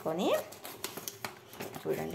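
Light crinkling and ticking of an opened paper-and-plastic flour packet being handled, between two short rising voice-like sounds at the start and near the end.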